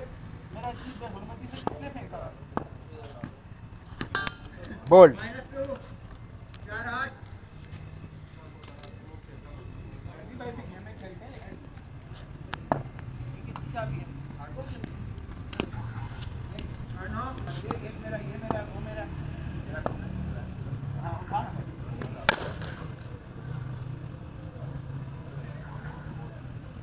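Players calling and shouting across a cricket net, with one loud shout about five seconds in, and a few sharp knocks during play, the loudest about twenty-two seconds in.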